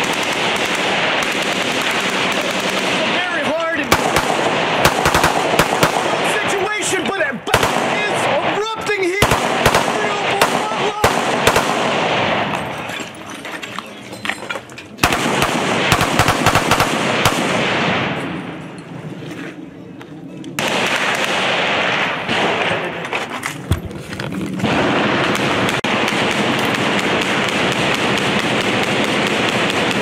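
Heavy, close gunfire: long runs of rapid shots that ease off twice partway through and then resume.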